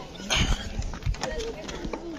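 A few footstep thumps on a metal-sheeted stair step, with children's voices around them.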